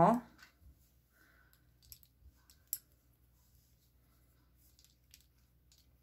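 Faint, sparse clicks of wooden knitting needles tapping together as stitches are slipped from one needle to the other, the sharpest click a little under three seconds in.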